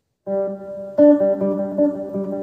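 Electric guitar on a clean tone with reverb, picking single notes on the G and D strings against the open G string, the notes ringing into one another. The playing starts about a quarter second in, with a stronger note at about one second.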